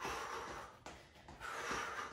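A woman breathing hard while exercising: two long, noisy breaths about a second and a half apart, one at the start and one near the end.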